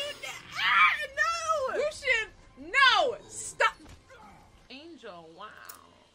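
Voices screaming and crying out: a run of long, arching cries that rise and fall sharply in pitch, fading to a weaker call after about four seconds.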